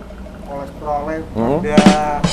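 A man's voice talking or vocalising, with a sharp noise near the end.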